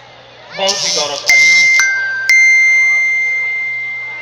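A chime sounding three notes about half a second apart, high, lower, then high again, the last note ringing on and fading slowly. A voice speaks briefly just before the first note.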